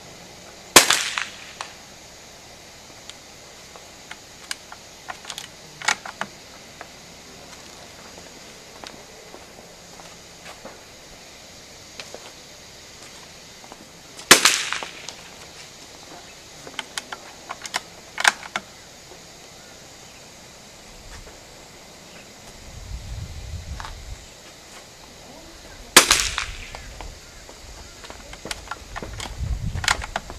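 Three rifle shots from a scoped target rifle fired off a bench, spaced about 12 to 13 seconds apart, each a sharp crack with a short echo. Fainter sharp clicks and cracks fall between the shots.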